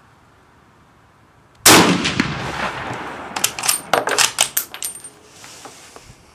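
A MAS 1936 bolt-action rifle in 7.5×54mm French fires one shot about two seconds in; the report echoes as it dies away. The bolt is then worked, giving a quick run of metallic clacks and ringing clinks as the spent brass case is ejected.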